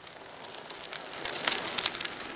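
A bicycle riding past on an asphalt road: a soft tyre hiss that slowly grows louder, with scattered light clicks and ticks, most of them a little past the middle.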